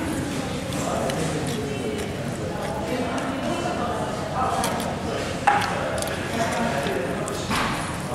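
Indistinct background voices in a fast-food restaurant, with a single sharp click about five and a half seconds in.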